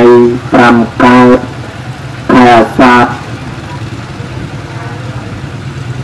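A monk's amplified voice intoning short phrases at a nearly level pitch, in a chant-like delivery, in the first three seconds. A steady low hum runs underneath throughout and is all that remains for the last three seconds.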